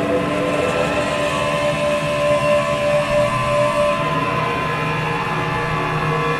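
Droning intro music: a held chord of many steady tones over a noisy wash, with no beat, before the band starts.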